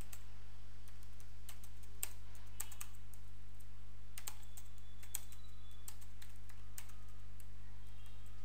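Typing on a computer keyboard: irregular, separate keystrokes as a line of code is entered, over a steady low electrical hum.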